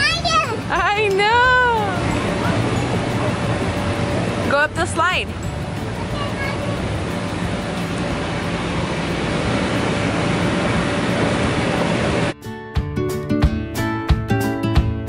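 A child's high-pitched shouts and squeals, twice in the first five seconds, over a steady rushing background noise. Acoustic guitar music cuts in suddenly near the end.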